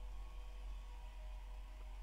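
Quiet room tone: a faint steady low hum with light hiss, and no other event.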